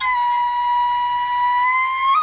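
Background music: a flute holds one long, steady note, its pitch rising slightly near the end.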